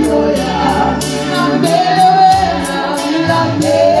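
Gospel worship singing by several voices, holding long notes, over a steady light beat of high ticks about three a second.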